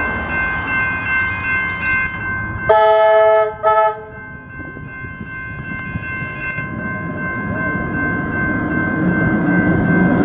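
Level crossing bells ringing steadily while a Tait 'Red Rattler' electric train approaches. About three seconds in the train sounds its horn, one long blast and then a short one. The rumble of the train on the rails then grows louder as it reaches the crossing.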